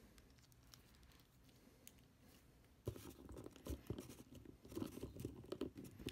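Near silence, then from about three seconds in faint scattered clicks and rubbing of hard plastic action-figure parts as one part is popped out and the original plugged back in.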